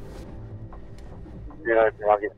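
Low steady rumble inside the cockpit of the SP80 kite-powered speed boat under way at speed, then a man's voice briefly near the end.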